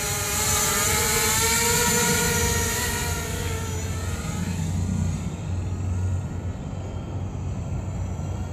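Quadcopter drone's electric motors and propellers whining as it comes in low and lands. The whine fades out about halfway through as the motors spin down, leaving a low rumble.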